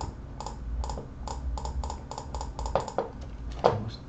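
Computer keys clicking in quick succession, about three to four presses a second, over a faint low rumble.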